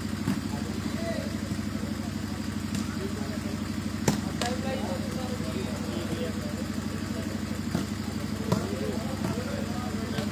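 Volleyball struck by hand during a rally: a sharp smack about four seconds in and a few lighter hits later, over a steady low engine-like drone and the murmur of voices.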